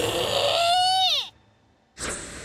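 A high character voice's drawn-out exclamation, one long held note that glides down and breaks off about a second and a half in, followed by near silence.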